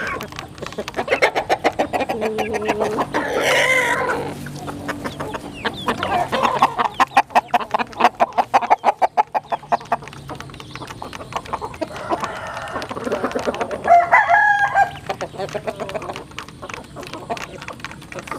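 A flock of chickens and roosters feeding at a plastic trough: beaks tap rapidly against the trough, with clucking throughout. There is a rising rooster crow about three to four seconds in, and another loud call at about fourteen seconds.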